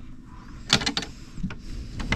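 The glass-paned door of a small wooden cabinet being pulled open by hand, with a few short clicks and rattles about three-quarters of a second in and a couple more near the end.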